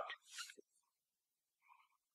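Near silence, with a faint brief squeak of a felt-tip marker writing on paper near the end.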